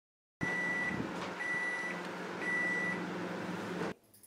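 LG microwave oven running with a steady fan hum, over which it gives three short high beeps about a second apart as its countdown timer runs out, signalling the end of the cake's baking cycle.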